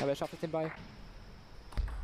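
A man's voice for the first moment, then a faint steady hiss for about a second, then a low rumble of hall ambience near the end.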